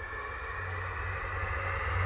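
Soundtrack tension riser: a deep, steady rumble under a noisy swell that rises slowly in pitch and grows louder. It builds toward a sudden cut-off.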